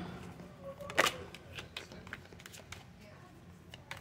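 A deck of round oracle cards being shuffled by hand: scattered light clicks and flicks of card on card, with one sharper snap about a second in.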